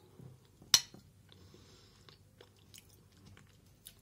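A person chewing a mouthful of soft rice porridge, with faint wet mouth sounds and small clicks. One sharp click stands out less than a second in.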